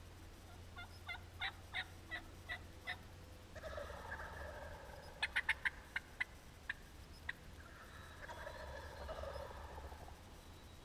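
Wild turkeys calling: a run of about seven short, evenly spaced notes, a longer warbling call about three and a half seconds in, a quick burst of sharp notes around five to six seconds, and another drawn-out warbling call near the end.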